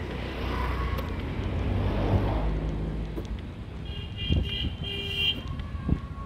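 Motor scooter passing close with its engine running over low road-traffic rumble; about four seconds in, a vehicle horn beeps twice in quick succession.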